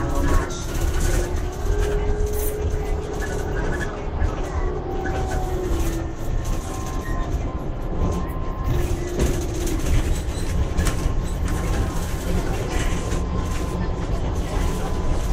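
Trolleybus riding along, heard from inside the passenger cabin: a steady low rumble of the moving vehicle, with the electric drive's faint whine gliding up and down in pitch.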